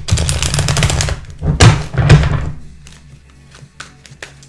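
Tarot cards being shuffled: a rapid run of crisp card flicks in the first second, then two loud knocks about half a second apart, followed by a few lighter clicks.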